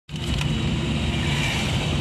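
Steady road-traffic noise heard from inside a car's cabin: engine and tyre rumble with a hiss over it.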